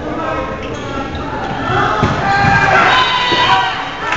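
Players' voices shouting and calling during a volleyball rally, louder in the second half, echoing in a large gym, with a few thuds of the volleyball in play.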